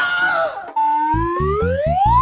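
Comedy sound effect in the background music: a synthesized tone that slides steadily upward in pitch, starting just under a second in, over a run of deep bass thumps.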